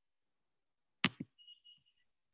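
Two sharp knocks in quick succession about a second in, the first loud, followed by a faint thin high tone; otherwise near silence.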